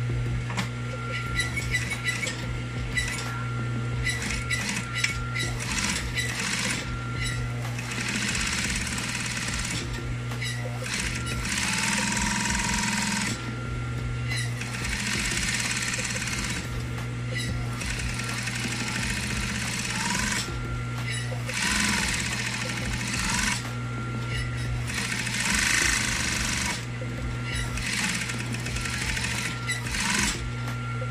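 Industrial sewing machine stitching in repeated runs of a few seconds, a fast needle rattle, over a steady motor hum that carries on between runs.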